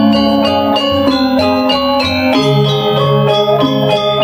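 Balinese gamelan gong ensemble playing, its bronze metallophones ringing in quick, even runs of notes over repeating low tones.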